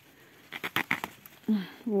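Eggplant leaves rustling and a stem snapping as a small fruit is torn off the plant by hand: a quick cluster of crackles about half a second in.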